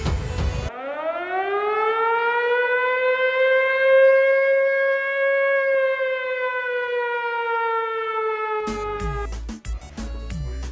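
Air-raid siren sound effect: a single wailing tone winds up from low to high over about two seconds, holds, then slowly sinks. Near the end it is cut off as a beat comes in.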